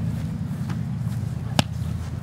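A rugby ball slapped out of the hands in a pass, heard as a single sharp slap about one and a half seconds in, over a steady low background rumble.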